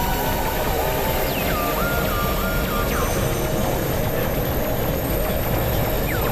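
Experimental electronic synthesizer drone: a dense, steady wash of noise under a wavering mid-pitched tone. Two short falling sweeps come in, one about a second and a half in and one about three seconds in, with a stepped higher tone between them.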